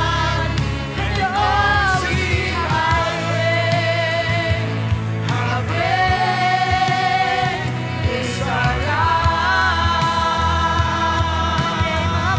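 Live gospel worship music: a woman singing long, sliding held notes over a band, with a saxophone at the start.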